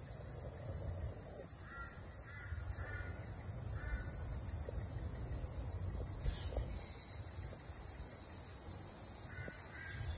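Bird calls outdoors in bushland: short calls of a few notes each, a cluster about two to four seconds in and more near the end, over a steady high hiss and a low rumble.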